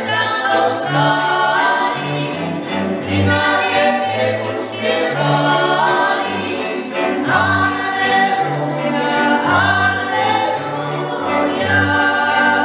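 Górale highland folk band playing: several fiddles over a cello-sized bowed bass, with voices singing along in unison.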